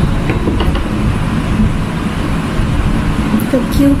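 A steady low rumble in the background, with a few faint knife taps on a wooden chopping board as green capsicum is cut.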